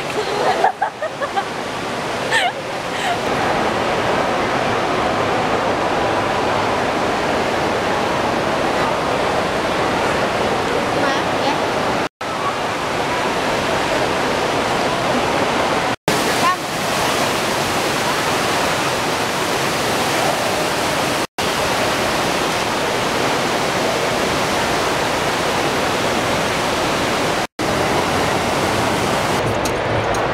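Fountain water splashing steadily into its basin, loud and close, cutting out briefly four times.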